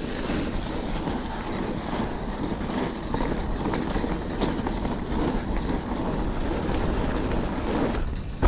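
Wind buffeting a handlebar-mounted action camera's microphone over the steady rumble of mountain-bike tyres rolling on a damp dirt trail, with a few light clicks and rattles from the bike.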